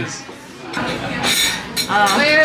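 Restaurant dining-room chatter, with a light clink of glassware about a second and a half in.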